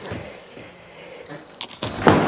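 Skateboard on the coping of a wooden mini ramp: a few light clicks near the end as the board tips forward to drop in, then a sharper knock as it goes over the edge.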